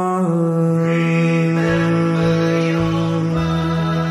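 A male singer holds the final sung note of the song, the word 'mine', over the backing track's closing chord. The pitch steps down slightly just after the start and then stays level, with a few low bass notes underneath in the second half.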